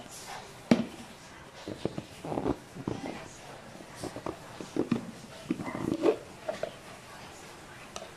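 A plastic food container and its lid being handled and opened: scattered light knocks and scrapes of plastic.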